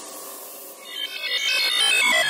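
Psytrance breakdown with no kick or bass: a fading synth wash, then, about a second in, a run of quick, bright synth notes that grows steadily louder, building toward the drop.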